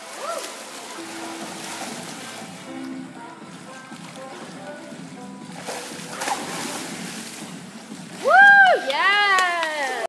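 Swimmers splashing and sloshing water in an echoing indoor pool, with faint music under it. About eight seconds in, a loud high-pitched voice calls out twice.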